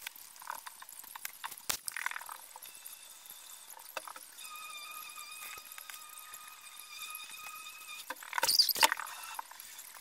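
Pen writing on notebook paper: quiet scratching with small taps of the pen. A faint, steady, high whine sounds for a few seconds in the middle, and a louder brief rustle comes near the end.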